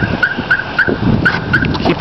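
A car's electronic warning chime: a quick run of short, high beeps on one pitch, about three or four a second, that stops shortly before the end.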